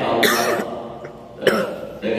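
A man clearing his throat close to a microphone, twice: a short rasp just after the start and a sharper one about a second and a half in.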